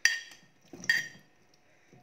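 Kitchenware clinking: a sharp ringing knock, a lighter tap, then a second ringing knock about a second after the first.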